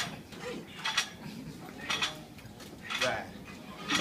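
Barbell bench press reps, each marked by a short sharp sound about once a second.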